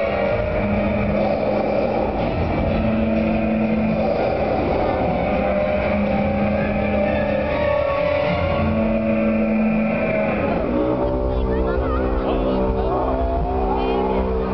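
Dramatic show score over the arena sound system, with long held notes changing every second or two. About eleven seconds in, a long, low dinosaur roar sound effect comes in and holds.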